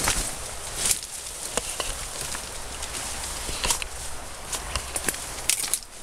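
Twigs and branches of a dense rhododendron thicket rustling and snapping as people push through it, with steps on leaf litter: a run of irregular sharp cracks and clicks over a steady rustle.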